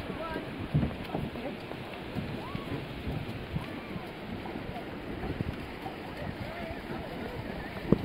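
Wind buffeting the microphone over a steady rush of rain and surf, with faint voices of people around. A single sharp knock just before the end.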